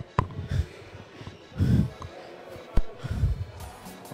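Dull low thumps about once a second from hurried footsteps and the jolting of a hand-held camera, with a sharp click near the start and faint music underneath.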